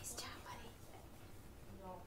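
Soft, breathy voice close to a whisper, with a brief hiss at the start and faint voiced sounds near the end.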